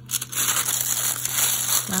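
Sheet of iridescent tablecloth wrapping crinkling as hands fold and press it around a plastic box.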